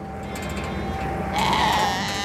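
Sheep bleating, with one long, loud bleat about one and a half seconds in.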